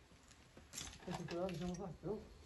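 A man's voice calling out a drawn-out word for about a second in the second half, just after a brief hissing sound.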